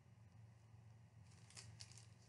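Near silence: room tone, with a few faint rustles of a piece of fabric being handled near the end.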